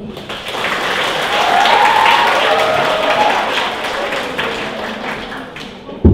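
Audience applauding, swelling over the first couple of seconds and then slowly tapering off.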